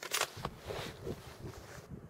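Handling noise from the prone shooter and rifle: a sudden sharp rasp and a click, then scraping and rustling that cuts off suddenly near the end.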